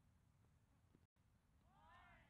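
Near silence, just a low outdoor rumble. Near the end a faint, drawn-out call comes in, its pitch rising and then falling.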